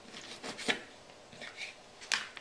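A few light clicks and taps of knife work on a cutting board while raw chicken is cut up, the sharpest tap about two-thirds of a second in.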